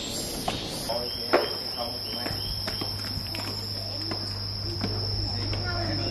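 A steady, high-pitched insect drone that starts abruptly about a second in and holds, with scattered footsteps on stone stairs.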